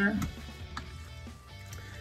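Quiet background music playing through a short pause in the talk.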